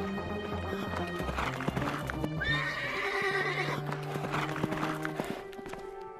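Cartoon sound effect of a horse running: quick, steady hoofbeats, with a whinny about two and a half seconds in, over background music. The hoofbeats die away near the end.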